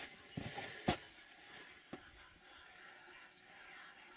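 Faint, unexplained hissing, whisper-like noise in an abandoned mine tunnel, which the explorer says doesn't sound like wind and almost sounds like snakes. A few soft knocks come in the first two seconds.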